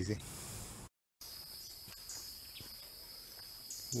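Insects droning in the forest: one steady high-pitched tone over faint background noise, starting after a brief dropout about a second in.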